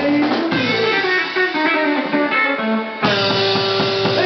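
Live rockabilly band of electric guitar, bass guitar and drums playing. The low end thins out under a run of guitar notes, then the full band comes back in together with a held chord about three seconds in.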